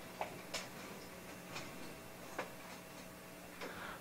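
Faint, scattered knocks and clicks, about five spread over a few seconds, as a seated audience gets to its feet, over a low steady hum.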